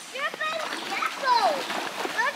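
A young child's high-pitched voice calling out in short excited rising and falling bursts, with water splashing as he wades into a shallow stream.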